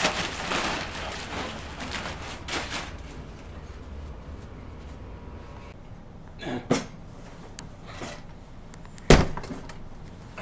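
A plastic Twister game mat being crumpled and gathered up by hand, crackling and rustling for about three seconds. Later come a few soft knocks and, near the end, one sharp loud knock.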